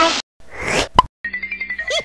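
Cartoon ident soundtrack: a music sting cuts off, followed by a brief swish and a single sharp pop about a second in. Then a new jingle starts up with wobbling tones.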